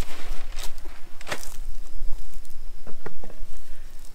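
Handling noise: a fabric bean bag rustles as a big telephoto lens mounted on a frying-pan ground pod is lifted off it and set on a metal table. There is a sharp knock just over a second in and a few light clicks near the end.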